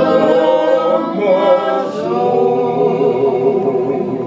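Several voices singing a song together, holding long notes.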